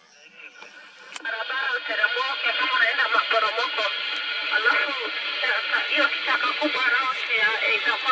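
Voices coming over a two-way radio, sounding narrow and tinny over a steady hiss, starting about a second in.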